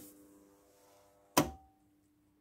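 Electric kiln's contactor clicking once, loud and sharp, about one and a half seconds in as it switches the heating elements, over a faint steady electrical hum.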